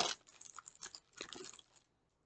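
Packaging being handled, crinkling faintly in short bursts during the first second and a half.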